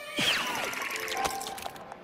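Cartoon whoosh sound effect that drops in pitch a quarter second in, followed by a rapid fluttering patter under light background music.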